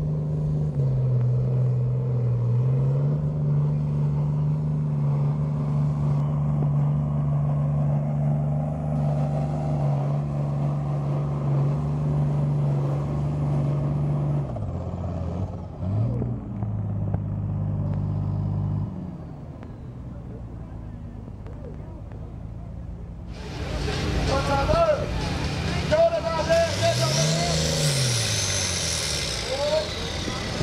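International Harvester diesel farm tractor pulling under full load in a tractor pull, a loud steady engine drone for about fifteen seconds that drops in pitch and then stops around nineteen seconds. After a lull, voices and crowd noise rise, with one short engine rev near the end.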